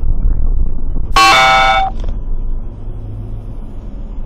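A car horn sounds once, a steady honk of just under a second about a second in, over the low rumble of a car driving, heard from inside its cabin.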